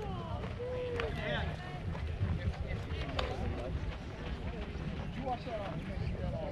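Distant voices of players and spectators calling out across a baseball field, over a steady low wind rumble on the microphone, with a couple of sharp clicks about one and three seconds in.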